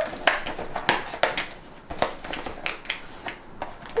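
Cardboard door of a chocolate advent calendar being picked at and pried open by fingers: a string of irregular small clicks and crackles of paperboard, about two or three a second.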